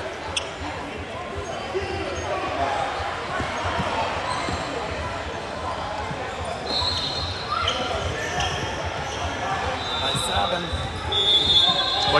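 Gym hubbub: many voices chattering in a large echoing hall, with a basketball bouncing on the hardwood floor. A couple of high, steady squeals come in the second half.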